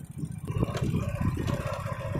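Low, uneven rumble of wind buffeting the microphone and road noise while riding a two-wheeler, with no clear engine note.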